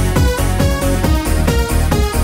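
1990s dance track playing in a continuous DJ mix: a steady kick-drum beat of about two and a half strokes a second under held synth tones.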